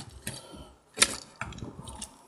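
Hard plastic toy parts clicking as a toy crane's extending ladder arm is raised by hand, with one sharp click about a second in where the arm clashes with the radar piece.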